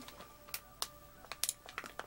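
Plastic snack bag crinkling as it is handled: several separate sharp crackles over a faint steady hum.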